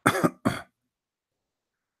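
A man coughing twice in quick succession, a longer cough then a short one.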